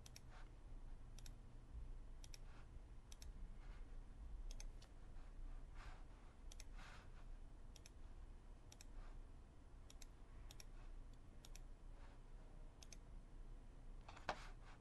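Faint computer mouse clicks, mostly quick press-and-release pairs, coming about once a second over a low steady hum.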